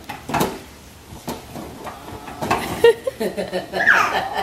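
Several sharp knocks and clatters of hard plastic toys, with a small child's high voice babbling about halfway through and a short falling squeal near the end.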